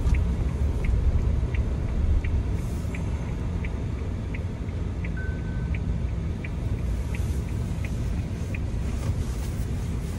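Cabin noise of a Suzuki Jimny JB64 under way: the steady low rumble of its 660 cc turbocharged three-cylinder engine and the road. A light tick repeats about every 0.7 seconds, and a brief high beep sounds a little past halfway.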